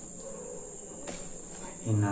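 Steady high-pitched trill of crickets, with a single faint click about a second in.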